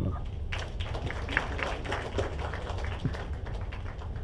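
An audience applauding, with dense hand clapping starting about half a second in.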